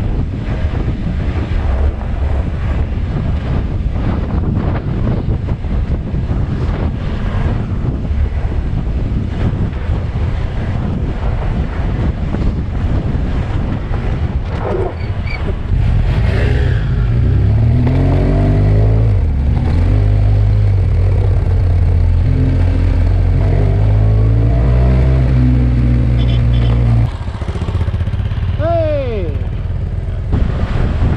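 BMW F800GS parallel-twin engine running under way on a gravel road, mixed with wind and road noise. About halfway through it grows louder and its note steps up and down with throttle and gear changes. It drops back near the end.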